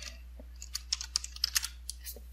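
Typing on a computer keyboard: a quick, irregular run of about a dozen keystrokes starting about half a second in.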